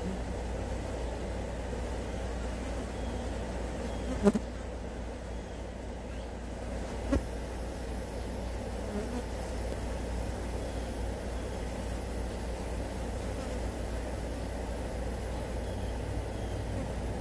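Swarm of flies buzzing steadily around chicken bones, over a low steady rumble. Two sharp clicks, about four and seven seconds in, are the loudest sounds.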